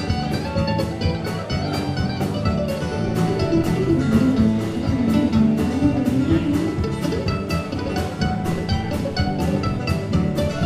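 Live bluegrass band playing an instrumental break, recorded from the audience: a mandolin picks the lead line over acoustic guitar, with a drum kit keeping a steady beat.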